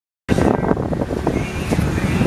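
Steady low rumble of the 34 Luhrs boat's engines, with wind buffeting the microphone. The sound starts abruptly just after the beginning, and a few light knocks come through it.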